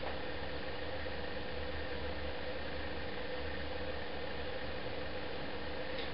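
Steady background hiss with a faint, even hum of room tone, and no distinct sounds from the hand work.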